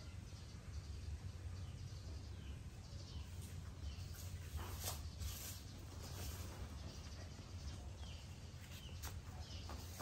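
Quiet outdoor ambience: a steady low hum with faint, scattered bird chirps. A brief soft rustle comes about five seconds in.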